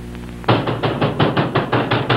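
Rapid knocking on a wooden door, about eight knocks a second, starting about half a second in, over a steady low mains hum.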